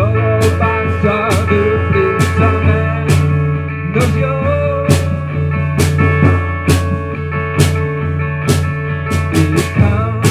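Live acoustic band music: acoustic guitar with drums and cymbal, the percussion striking about once a second and playing a quick run of hits near the end.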